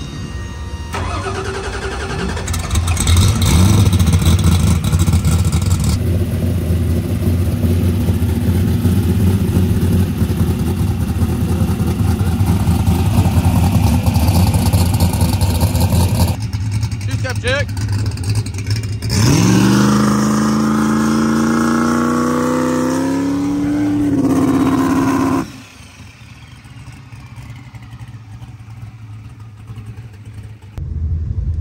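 Turbocharged V8 of a Mustang drag car running at idle with a steady low rumble; later the engine is revved, its pitch climbing steadily for several seconds before it stops abruptly.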